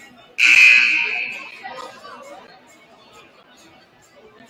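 Gym scoreboard horn sounding once, about half a second in: a loud, blaring tone that fades away over about a second, the signal that ends a timeout.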